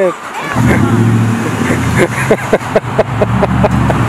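Lifted pickup truck's engine running steadily with a low drone that comes in about half a second in. Short bursts of voices and laughter sound over it.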